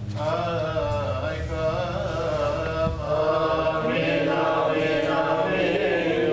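Coptic Orthodox liturgical chant: voices singing long, drawn-out, wavering melodic lines in a liturgical response during the Eucharistic prayer.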